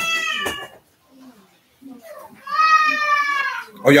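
Two long, high-pitched calls, each slightly falling in pitch: the first trails off under a second in, the second runs for about a second past the middle.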